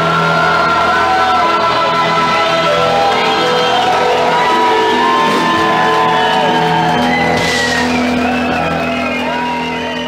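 Live rock and roll band playing in a packed bar: electric guitar and band with voices singing, shouting and whooping over it. The music gets quieter over the last couple of seconds.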